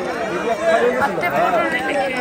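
Many people talking at once: overlapping crowd chatter, with no single voice standing out.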